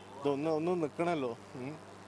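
A man's voice: two short phrases with rising and falling pitch, then a brief third sound, in speech the recogniser wrote no words for.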